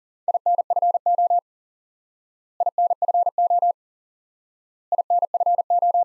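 Morse code at 40 wpm: a single steady tone of about 700 Hz keyed on and off in rapid dots and dashes, sending the same short group three times, each about a second long with about a second of silence between. The group is the QSO abbreviation for 'information' (INFO).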